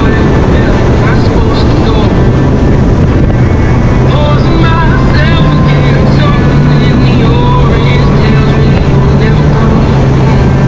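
Bass boat running at speed: the steady drone of its outboard motor under a loud rush of wind and water. The engine tone rises slightly about halfway through.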